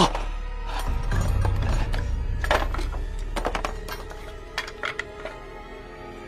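Tense background score with a low drone, over which several light clinks and knocks sound, scattered through the middle.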